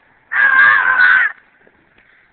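A person's high-pitched shriek, held for about a second.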